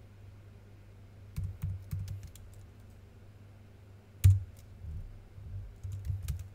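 Computer keyboard keystrokes as a passphrase is typed for an SSH key: a few light key taps, then one much louder key press about four seconds in, over a low steady hum.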